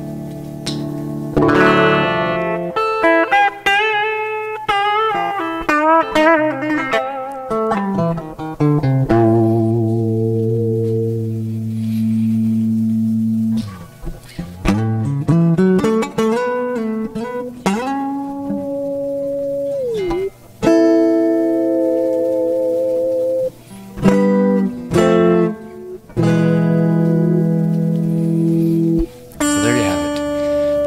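Steinberger Spirit headless electric guitar played with its pickup selector in position four: quick runs of single notes, then held chords, with notes bent down and back up around the middle.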